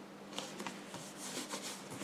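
Faint rustling and a few small taps of gloved hands pressing adhesive defibrillator pads onto a plastic CPR manikin's chest, over a faint steady hum.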